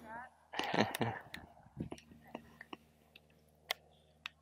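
A person's short vocal sound about half a second in, voiced and wordless, followed by faint, scattered clicks and ticks.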